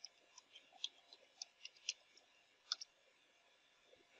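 Faint computer keyboard clicks: about eight separate keystrokes at an uneven pace over the first three seconds, as a short word is typed and Enter is pressed.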